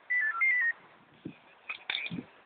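A quick run of about six electronic beeps, each a pure tone stepping up and down in pitch, over less than a second near the start. A few faint knocks follow near the end.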